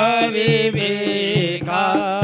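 A Shiva aarti hymn sung to music, the voice held on long gliding notes over a steady beat of about four strikes a second.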